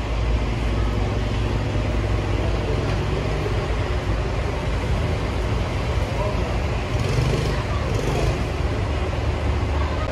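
Large diesel bus engine idling steadily, a continuous low rumble, with faint voices in the background.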